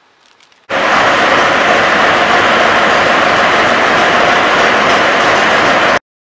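Loud, steady rush of machinery noise and woodchips pouring as a front loader's bucket tips woodchips into a stoker boiler's fuel hopper, starting suddenly under a second in.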